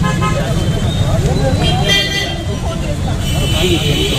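Several people talking over one another on a busy street, over a loud low rumble of traffic and wind on the microphone. A vehicle horn sounds briefly about two seconds in and again near the end.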